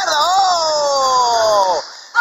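A long drawn-out excited vocal cry, one held vowel of nearly two seconds that rises briefly and then slides slowly down in pitch before breaking off. It is a commentator's reaction to a punch landing.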